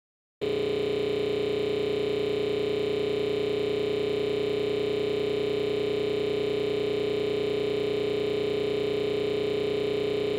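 A steady, unchanging electronic tone with a buzzy undertone, starting abruptly about half a second in after a brief dropout to silence. It is a signal fault in the broadcast recording, not a sound from the studio.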